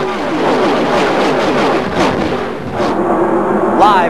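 A pack of unrestricted NASCAR stock cars passing at racing speed, many V8 engine notes overlapping, each falling in pitch as its car goes by. Near the end the engine sound settles into a steadier note.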